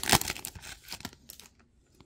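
Foil trading-card pack wrapper ripped open and crinkled, loudest right at the start, followed by a few fainter rustles of the wrapper and cards that die away about a second and a half in.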